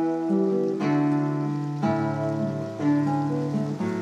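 Background music of acoustic guitar, plucked notes and chords changing about once a second.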